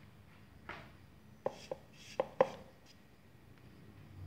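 Hands handling a powder-coated block of gym chalk: a soft brush of powder about a second in, then four short, sharp taps in quick succession, the last one loudest.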